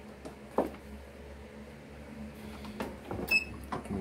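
Handling of an MPress clamshell heat press: a sharp click about half a second in, then several clicks and a clunk with a brief metallic ring near the end as the press is worked to flatten wrinkles out of a T-shirt.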